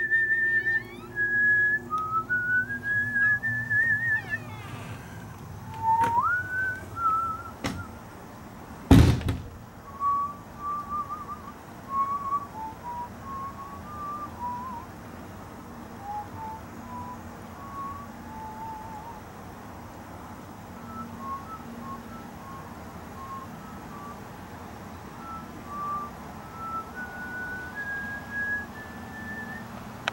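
Someone whistling a slow tune in held notes with rising slides and small trills. A single heavy thunk comes about nine seconds in, and after it the whistling goes on softer in shorter notes.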